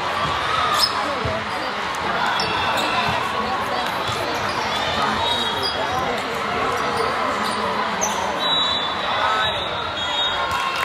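Volleyball rally on a hardwood gym court: sharp slaps of the ball off players' hands and arms every second or two, and short high squeaks of sneakers on the floor, over players' voices echoing in a large hall.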